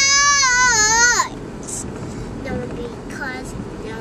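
A young girl's voice belting one long, high, wavering sung note for about a second at the top of her lungs, then dropping to a few faint short vocal sounds. Low car road noise runs underneath.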